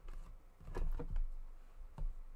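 Handling noise as a painted panel is shifted on a desk: a few light knocks and clicks over a low rumble, mostly in the first second and a half.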